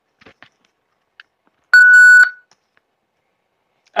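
A single loud electronic beep: one steady high tone lasting about half a second, just under two seconds in, with a few faint clicks before it.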